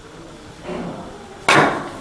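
Carom billiard balls being struck by the cue and clacking together during a shot. The loudest is a single sharp clack about one and a half seconds in.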